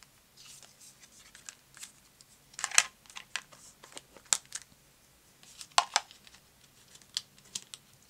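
Small clicks, taps and paper rustles of rubber-stamping supplies being handled: a clear acrylic stamp inked on a black ink pad in its plastic case and pressed onto paper. Two sharper clacks come about three and six seconds in.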